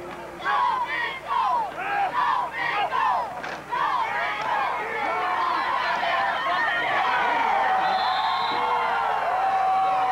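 Football crowd yelling during a play: scattered overlapping shouts at first, swelling about halfway through into a sustained cheer.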